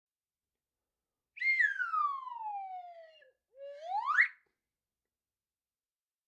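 Whistle-like intro sound effect: a tone starts about a second and a half in, holds briefly, slides down over nearly two seconds, then after a short gap slides quickly back up.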